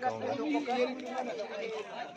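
Several people chatting, a mix of voices talking over one another.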